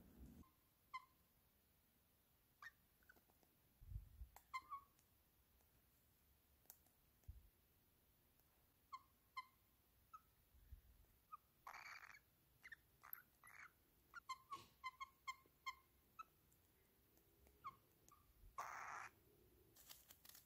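Cockatiel chicks giving faint, short peeps, scattered at first and coming several a second after the middle, with two half-second hissing noises.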